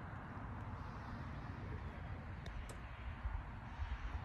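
Steady background hiss with a fluctuating low rumble, and two faint high ticks about two and a half seconds in.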